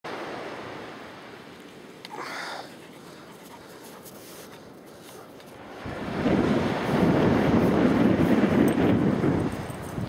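Wind blowing across the camera microphone: a low, faint hiss at first, then loud rumbling gusts from about six seconds in, easing just before the end.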